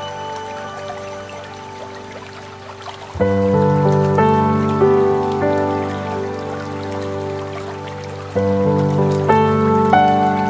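Soft background music of sustained chords. A new chord comes in about three seconds in and another near the end.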